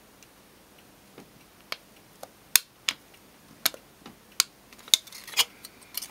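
Irregular sharp ticks and clicks of a pen tip embossing a spiral into a thin steel sheet cut from a drink can, laid on a cork board, about one every half second. A faint scraping rustle comes in near the end as the sheet is moved.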